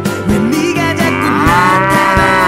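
Background music, with a drawn-out, wavering, voice-like sound effect laid over it from about a second in. Its pitch rises and then falls.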